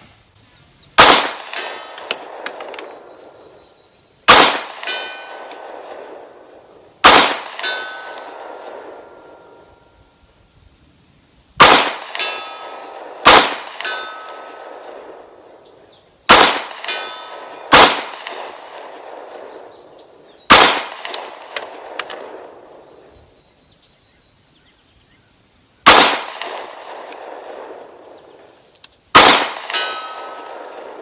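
Ten 9mm pistol shots fired at an unhurried, uneven pace, one to five seconds apart. Each is followed a moment later by a brief metallic ring, the sound of the steel target being hit.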